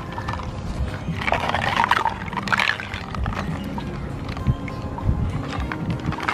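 Water sloshing and splashing in a plastic tub of toy sea animals, loudest between about one and three seconds in, over faint background music.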